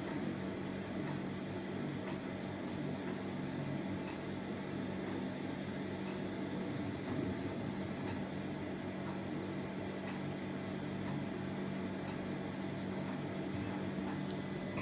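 Vegetables frying down in masala in a metal pan: a steady sizzling hiss over a low hum, with a metal spatula stirring now and then.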